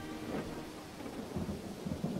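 Thunderstorm ambience: a steady rain hiss under low, irregular rumbles of thunder.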